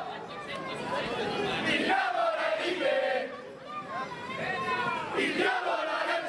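A crowd of marching carnival orange throwers shouting and chanting together, with loud drawn-out shouts about two seconds in and again near the end.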